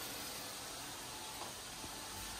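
Faint, steady hiss of food cooking on a stovetop hob, with no clear pops or knocks.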